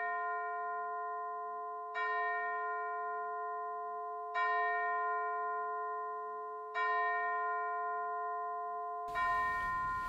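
A single bell struck slowly, about every two and a half seconds (four strikes), each strike ringing on with a long fading tone into the next. A faint hiss of room tone comes in near the end.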